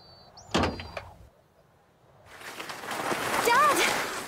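A van door is shut with a single sharp thump about half a second in, with short high-pitched tones on either side of it. A rising rush of noise follows, and children's voices call out near the end.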